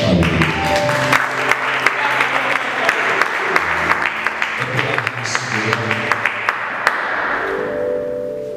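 Audience applause, many hands clapping irregularly, over music with sustained low chords; the clapping dies away near the end.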